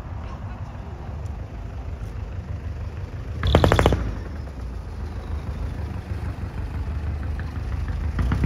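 A custom show van's engine running low as the van drives slowly past, with a short, loud burst of rapid pops about three and a half seconds in.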